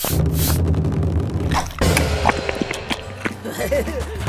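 Cartoon soundtrack that starts abruptly: music with a steady bass, mixed with short knocks and clicks from sound effects and a few brief vocal noises from the characters.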